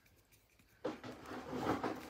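Hands working at a knitting needle case, rubbing and rustling against it as a circular needle stuck in its holder is pulled at. The rubbing starts suddenly about a second in, after a quiet moment.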